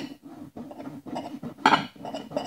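A table knife sawing through a bread slice's crust and scraping on the plate beneath it in a run of short strokes, with one louder clink of knife on plate near the end.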